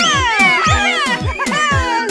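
Cartoon character's high-pitched gleeful laughter: a run of squealing notes, each sliding down in pitch, a few per second. It plays over background music with a steady pulse of short low notes.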